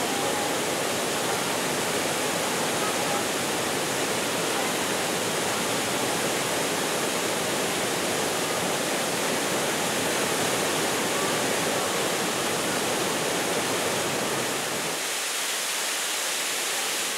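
Waterfall rushing steadily down a rock face, a continuous even roar of falling water. Its deepest part drops away near the end.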